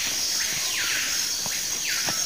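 Insects droning steadily at a high pitch, with a falling whine repeating about once a second.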